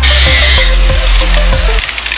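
Electronic dance music with heavy bass and repeating falling synth sweeps, a bright hiss at the start; the bass drops out near the end.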